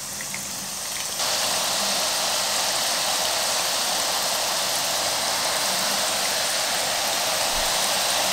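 Drops of gram-flour batter falling through a perforated jhara into hot oil and sizzling steadily as boondi fry. The sizzle grows louder about a second in, as the batter starts running through, then holds level.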